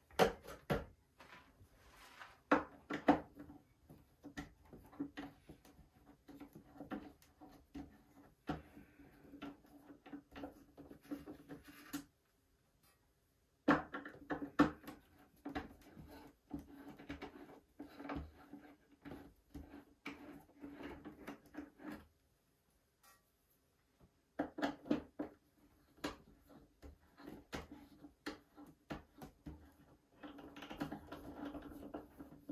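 Hand screwdriver turning out the screws of a metal landing-gear unit mounted in a balsa model-aircraft wing: runs of small clicks, ticks and light knocks, with two short silent breaks.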